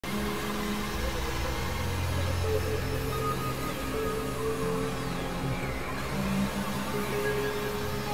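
Experimental synthesizer drone: several held tones that change pitch every second or so, layered over a steady noisy hiss, with faint sweeping glides higher up.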